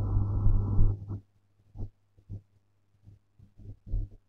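Low road and engine noise inside a slowly moving car. It cuts off abruptly about a second in, leaving near silence with a few faint short ticks.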